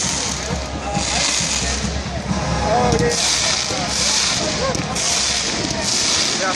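Stadium pyrotechnic spark fountains firing, a series of loud hissing bursts about one a second, over the noise of a large crowd.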